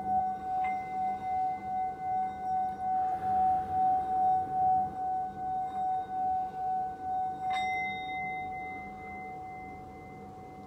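Small metal singing bowl held on the palm, its rim rubbed round with a wooden mallet: one steady sung tone with a slow wavering pulse. Near the end the mallet knocks the rim once, the rubbing stops, and the tone rings on, slowly fading.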